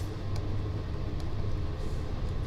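A pen scratching faint strokes on graph paper over a steady low background rumble.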